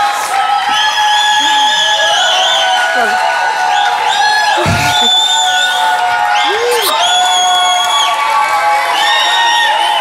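Studio audience cheering with long, high whoops and calls over music. A single low thump comes about halfway through.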